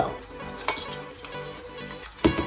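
Thin nickel-plated metal serving tray being handled and set down on a table: light metal scrapes and a sharp click about a third of the way in, over faint background music.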